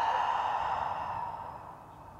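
A woman's long exhale out through the mouth, a breathy sigh of release that fades away over about a second and a half.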